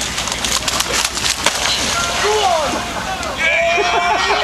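A man's running footsteps slapping through wet mud as he sprints and dives onto a muddy water slide, a quick run of sharp slaps in the first second and a half. Onlookers' voices and calls follow in the second half.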